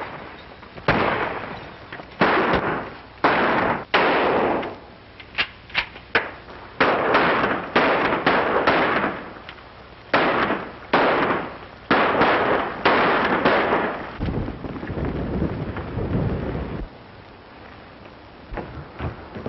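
Gunfire in a western film shootout: a long run of sharp shots, about one a second and some in quick pairs, each with a ringing tail. Near the end a low rumble lasts a few seconds.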